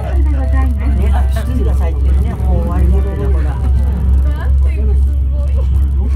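Steady low rumble inside a ropeway gondola cabin as it rides up the cable, with a voice speaking over it throughout.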